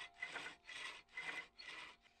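Four short, faint strokes of hands rubbing a small piece of wood, about two a second.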